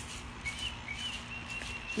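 Songbirds chirping outdoors: a few short high chirps, then one long steady whistled note near the end.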